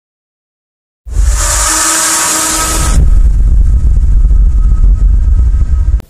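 A deep rumble starting about a second in, with a bright hiss and a few faint steady tones over it for about two seconds, then the rumble alone until it cuts off suddenly.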